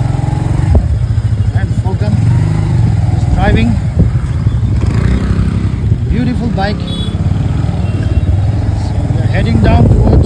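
Street traffic: vehicle and motorcycle engines running close by, with the voices of people on the street mixed in.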